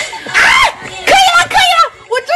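A woman's loud, high-pitched squeals and shrieks of embarrassment, a short burst about half a second in and then several rising-and-falling cries.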